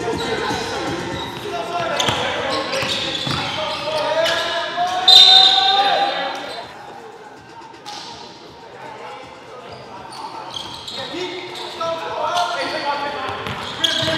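Indoor gym game sound with players' voices calling out and a basketball bouncing on the hardwood floor, echoing in the hall. A short high-pitched sound about five seconds in is the loudest moment, and it is quieter for a few seconds after it.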